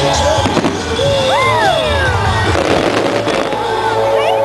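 Display fireworks going off: a sharp report about half a second in, a whistle that rises and falls a little over a second in, and a crackling burst around three seconds in, all over steady background music.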